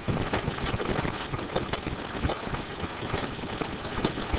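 Steady room noise with faint, irregular clicks and scratches from a pen drawing short dashed lines on an interactive whiteboard.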